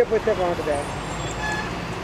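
Roadside traffic noise: a steady hum of passing cars and trucks.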